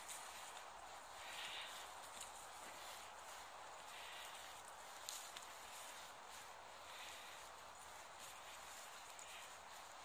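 Faint, soft rustling footsteps over dry leaf litter and pine needles, above a steady hiss.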